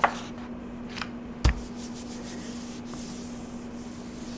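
A sheet of paper laid onto a gel printing plate and rubbed down by hand: a soft thump about a second and a half in, then a faint rustle of palm on paper. A steady low hum runs underneath.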